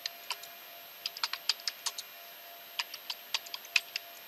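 Typing on a computer keyboard: irregular keystroke clicks in two quick runs, about a second in and again near the end.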